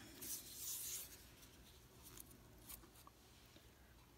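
Soft rustling of dyed paper strips being handled, mostly in the first second, then near silence broken by a couple of faint light ticks.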